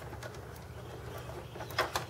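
Plastic hard drive cable connectors being worked loose inside a desktop PC case, with two sharp clicks near the end as a connector comes free, over a low steady hum.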